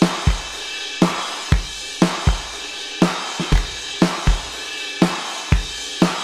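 Addictive Drums virtual drum kit playing back a steady drum beat: kick and snare hits about once or twice a second under a constant wash of cymbals.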